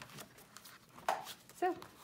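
Paper pages of a handmade junk journal being handled and turned, with faint light rustles and one short rustle about a second in.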